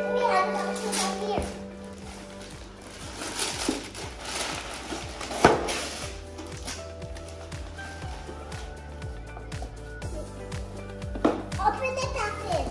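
Background music playing throughout, with wrapping paper rustling and tearing as a gift is unwrapped, the loudest tear about five and a half seconds in.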